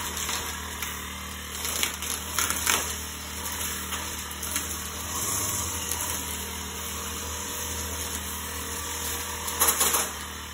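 Petrol brush cutter engine running steadily as it cuts grass and weeds, with brief louder bursts about two seconds in and again near the end.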